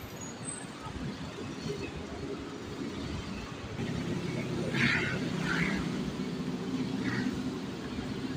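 City road traffic heard from an elevated walkway, a steady din of vehicles. About halfway through, a vehicle engine's low hum grows louder and holds.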